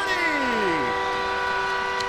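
Arena goal horn sounding a steady chord of several air-horn tones after a goal. A voice trails down in pitch during the first second.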